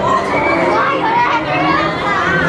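Children's voices chattering and calling, several high voices overlapping.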